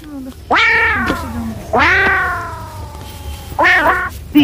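Three drawn-out, meow-like cries, each starting high and sliding down in pitch; the middle one is the longest.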